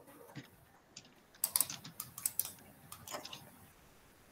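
Computer keyboard typing: short, irregular runs of key clicks, busiest from about a second and a half to two and a half seconds in, with a few more a little after three seconds.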